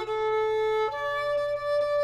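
A violin playing long bowed notes in a soft passage. One note is held, then the line steps up to a higher note about halfway through and sustains it.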